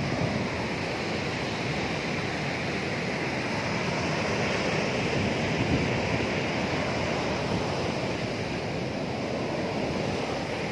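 Sea surf breaking and washing up onto a sandy beach, a steady rushing wash that swells slightly in the middle, with wind buffeting the microphone.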